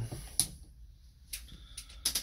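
A few light clicks against a quiet background. The loudest comes about half a second in, and a small cluster follows near the end.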